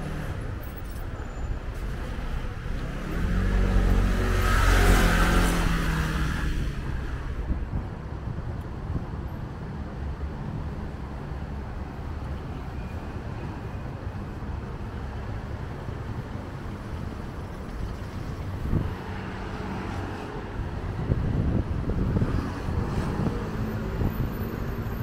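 City street traffic: a motor vehicle passes close by about four seconds in, its engine note dropping in pitch as it goes past. Steady traffic noise follows, and another vehicle swells up near the end.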